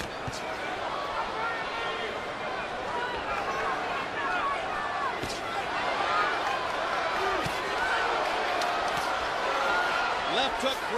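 Arena crowd noise: many voices shouting and calling at once in a steady din, with a few sharp thumps near the start and about five seconds in.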